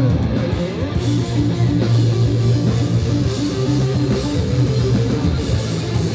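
Live rock band: two electric guitars playing a repeating riff over drums, loud and heard from within the crowd.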